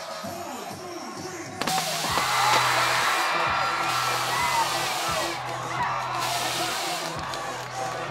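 Background music with steady bass notes. About a second and a half in, a crowd of students cheering and shouting cuts in suddenly and carries on over the music.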